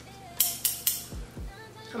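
Steel hair-cutting scissors clicking three times in quick succession, blades opening and closing, as they are readied to cut a section of wig hair.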